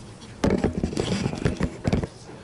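Camera handling noise: a sharp knock about half a second in, then clatter, rubbing and more knocks as the fallen camera is picked up and set back in place.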